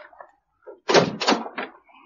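Three heavy bangs in quick succession, like doors being slammed shut, after a couple of faint knocks.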